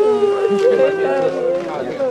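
Several people's voices at once, one of them a long held cry that slides slightly down in pitch and fades near the end.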